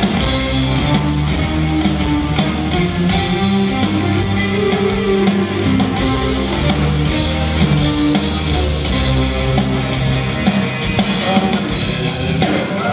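Live rock band playing, with strummed guitars and a drum kit keeping a steady beat.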